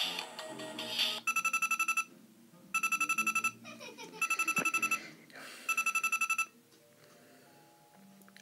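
Electronic Deal or No Deal game's built-in speaker finishing a short tinny tune, then giving four bursts of rapid trilling electronic ringing, like a phone ring, each under a second long, as the banker's offer comes up on the display.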